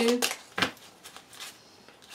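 A tarot deck being handled by hand: one short, sharp card snap about half a second in, then only faint handling.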